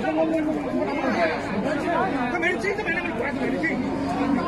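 Babble of a large crowd at a cattle market, many people talking at once, steady and lively.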